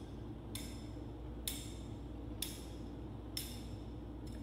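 A metal thurible (censer) swung on its chains, clinking with a short ringing chink about once a second, four times.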